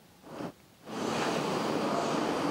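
After a brief faint sound, a steady, even noise begins about a second in: the background sound of a conference hall, with no one speaking.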